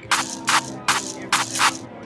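Electronic clap and shaker drum samples triggered by hand gestures on an Artiphon Orba controller: five short, noisy hits in an uneven rhythm, two of them close together near the end.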